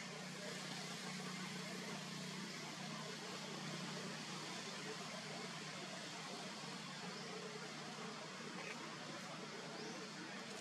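Steady outdoor background hiss with a constant low hum underneath, with no distinct events.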